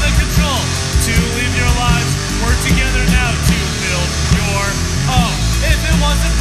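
Instrumental passage of a grunge/hard-rock band recording, with drums, bass and electric guitar. A high lead line keeps bending up and down in pitch over a steady beat.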